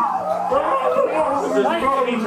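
Several people talking and calling out over one another, with a steady low hum underneath.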